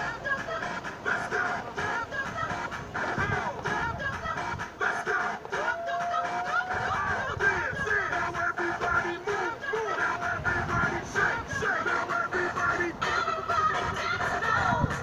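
Music playing, with a melody line running through it.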